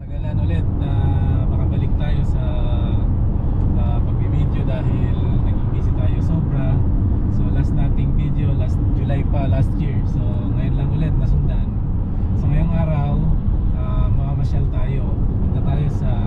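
Steady low rumble of car engine and tyre noise heard inside the cabin at highway speed, with faint voices under it.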